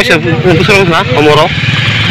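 An elderly woman speaking through tears in a wavering, breaking voice, over a steady low engine hum.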